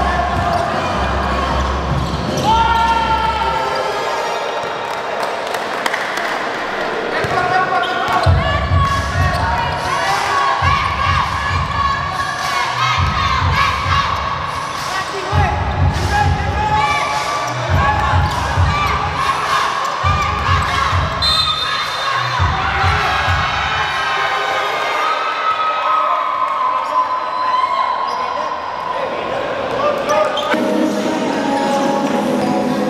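Live basketball game sound on a hardwood court: the ball bouncing, short squeaks and players' voices. Repeated stretches of low rumble run through the middle.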